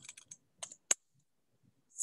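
Keystrokes on a computer keyboard: a quick run of about seven light clicks in the first second, the last one the sharpest. They are the J shortcut and Enter being typed for AutoCAD's Join command.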